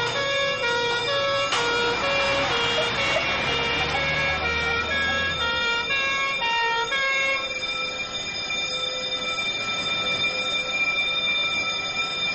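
Two-tone emergency-vehicle siren sounding a steady hi-lo alternation over a running vehicle engine. About seven seconds in, the alternation stops and a steady held tone carries on.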